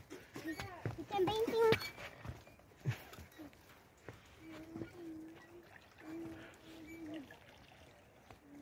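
Quiet, faint voices. Talk in the first two seconds is followed by a few drawn-out held sounds, with a few light knocks of footsteps on the wooden planks of a suspension bridge.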